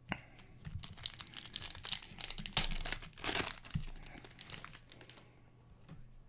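Foil wrapper of an Upper Deck Series 1 hockey card pack being torn open and crinkled. The crackling is loudest in the middle and dies away about five seconds in.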